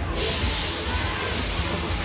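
A steady high hiss starts abruptly and holds, over a low rumble from the bumper-car rink.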